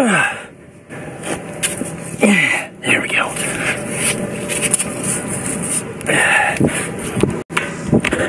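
A man's short grunts and exclamations of effort as he climbs, each falling in pitch, over continuous rushing and rubbing noise on a body-worn camera's microphone.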